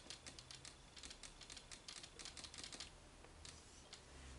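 Faint marker-pen strokes on a whiteboard: quick, irregular little scratches and taps as letters are written.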